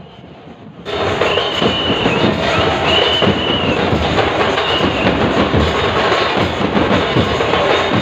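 Festival crowd drumming and clashing metal percussion: a dense, loud, rhythmic din of drum beats and ringing metal that bursts in suddenly about a second in, with a high ringing note that comes and goes.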